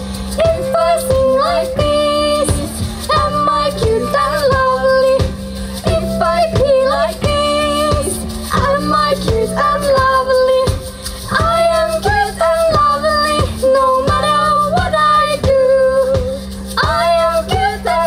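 Live band music: a woman singing the lead melody into a microphone over electric guitar and a steady drum beat.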